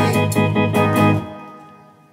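A rocksteady band ending a song live: organ-like keyboard, electric guitars and bass play a held final chord with a few rhythmic strokes. The band stops a little over a second in and the chord rings out, fading away.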